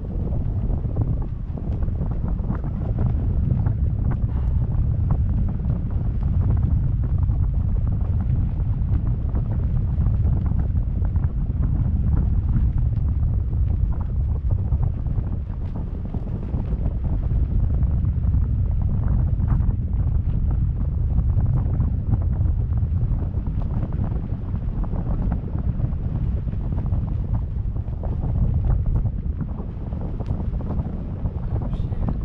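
Wind buffeting the microphone of a camera hanging from a parasail high above the sea: a steady low rumble that swells and eases.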